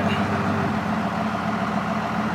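12-valve Cummins inline-six diesel idling steadily, heard from inside the truck's cab.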